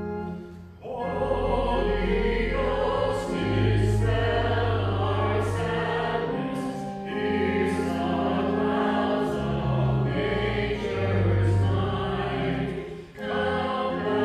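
Voices singing a hymn with organ accompaniment, in long sung phrases with short breaks about a second in and near the end.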